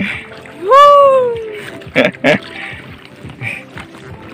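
A man's voice gives one loud drawn-out call, rising then falling in pitch, about a second in. Then oars splash into the water twice in quick succession as the inflatable boat is rowed.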